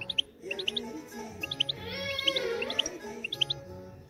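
Caged European goldfinch chirping, short high notes repeated through the clip, with music playing underneath.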